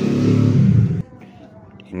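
A motor vehicle engine running, its sound cut off suddenly about a second in, leaving quiet.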